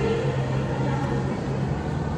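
Steady background noise of a shopping mall interior, with a low steady hum under an even wash of room noise.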